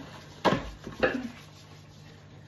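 A child claps her flour-dusted hands together twice, two sharp claps about half a second apart.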